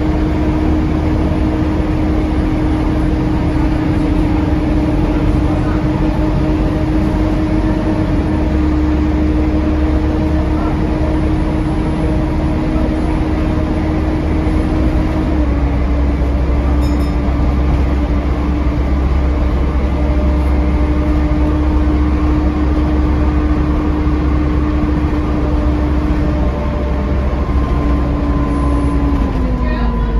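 Volvo B7TL double-decker bus heard from the upper deck while under way: a steady drone of engine and cooling fans over road rumble. The held tone drops in pitch about halfway through and slides down again near the end.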